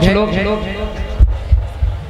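A man's amplified voice trails off, then a few dull, low thumps come through the PA about halfway through.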